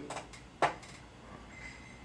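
A single sharp click a little over half a second in, with a few faint ticks of handling before it.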